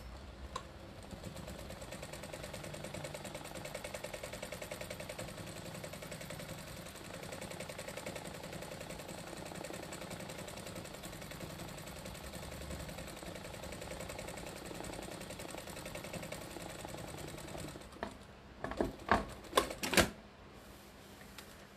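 Sewing machine stitching steadily as a quilt is free-motion quilted, the needle running at an even speed. The machine stops near the end, and a few loud knocks follow.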